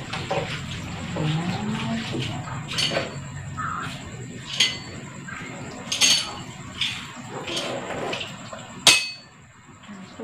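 Tap water running into a stainless-steel sink while fresh noodles are rinsed in a plastic tub, with about five sharp knocks and clinks of the tub against the sink. The loudest knock comes near the end, and the running water stops just after it.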